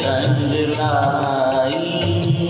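A man singing a Hindi film song into a microphone over a karaoke backing track, holding a long, wavering note in the middle, with a light steady beat underneath.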